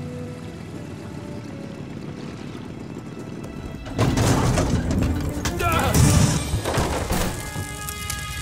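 Cartoon crash sound effect of a burning billboard smashing down: a sudden loud crash about halfway through that rumbles on for about three seconds, over background music.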